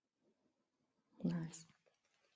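Near silence, then about a second in a woman's short, breathy vocal sound lasting about half a second, like a single murmured word or a voiced sigh.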